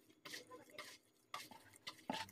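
Near silence, with a few faint, soft taps and squishes of a hand kneading soft dough in a plastic bowl.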